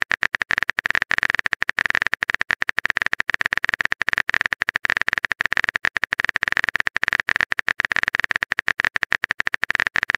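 Typing sound effect: a fast, uneven run of keyboard-like clicks, several a second, going without a break.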